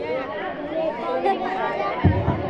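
Speech only: several voices talking and overlapping in chatter.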